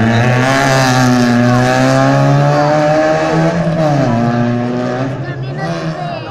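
Rally car engine held at high revs as the car powers through a turn and away. The pitch dips briefly about four seconds in, then holds again before fading as the car drives off.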